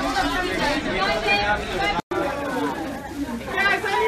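Several people talking over one another in chatter that the recogniser could not make out; the sound drops out completely for an instant about halfway through.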